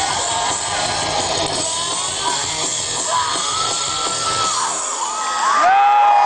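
Rock band playing loud and live through a festival PA, with fans in the crowd yelling over it. About five seconds in the music stops, and people close by cheer and whoop loudly.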